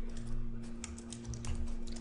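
Computer keyboard keys clicking in a quick irregular run as selected code is deleted and a new line is started, over a faint steady electrical hum.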